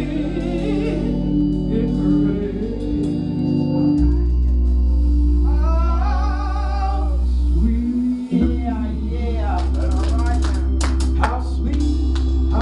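A woman singing a gospel song into a microphone over steady, sustained low instrumental chords. Her voice holds a long note with vibrato about six seconds in, and sharp percussive hits come in near the end.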